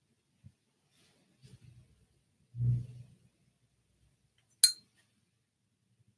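Quiet, broken by a soft low bump about halfway through and then one sharp, briefly ringing clink of a small hard object near the end.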